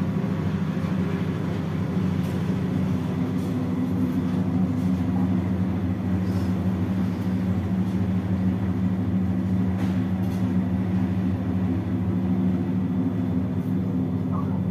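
A steady low mechanical hum, like a motor or engine running, holding an even pitch and level throughout.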